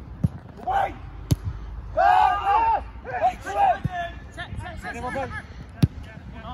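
Players shouting on a football pitch, broken by four sharp thuds of a football being kicked. The last thud, near the end, is the sharpest.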